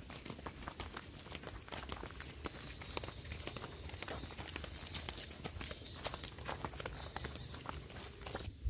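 Footsteps on a dirt path: irregular light clicks and scuffs, over a low rumble on the microphone.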